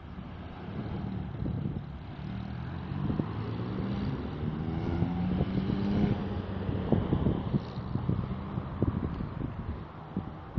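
A motor vehicle engine running nearby, swelling to its loudest around the middle, with wind buffeting a phone microphone and gusty thumps on it in the last few seconds.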